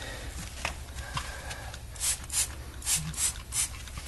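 Paper towel rubbing over a plastic pet door flap wet with cleaner, in about five quick wiping strokes in the second half.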